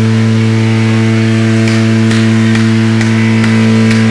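Electric guitar amplifier left on stage, putting out a loud, steady low drone with overtones, with a few sharp crackles on top.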